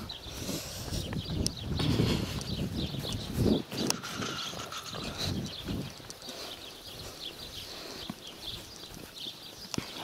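Footsteps swishing and thudding through long grass, loudest in the first few seconds, with birds chirping faintly in the background.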